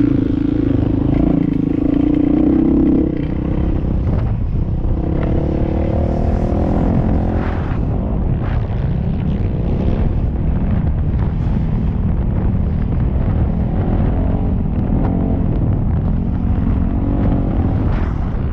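Dirt bike engine under load, held at high revs for the first three seconds, then easing off and rising and falling repeatedly as the throttle is worked and gears change, with wind buffeting the microphone.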